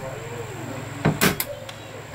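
A BB gun fired out of a window: a sharp snap about a second in, with a second click close behind it.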